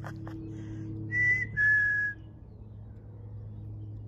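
Chickadee singing its two-note whistled song about a second in: a clear higher note, then a slightly lower, slightly longer one.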